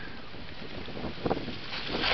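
Steady wind noise on the microphone, with a few faint rustles about a second in and near the end.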